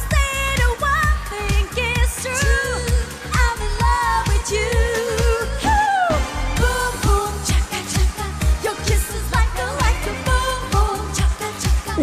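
Armenia's Eurovision entry, a pop dance song with a woman singing lead over a steady beat. The beat drops out briefly about six seconds in, under a falling vocal slide.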